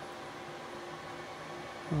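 Steady whir of computer and server cooling fans, with a faint steady hum under it.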